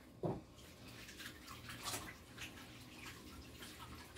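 Faint rubbing and small scattered handling noises of hands being wiped clean of wet paint, with a soft thump just after the start.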